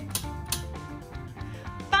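Spinning prize wheel's pointer ticking against the pegs on its rim, the clicks coming slower and fainter as the wheel runs down to a stop. Background music plays underneath.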